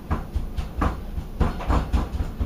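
Hands pressing and rubbing seasoning into a slab of ground pork in a foil-lined pan, making a run of irregular crinkles and knocks from the foil pan against the table, with low thumps.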